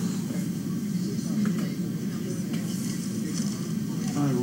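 Steady low room hum with a few faint clicks and rustles.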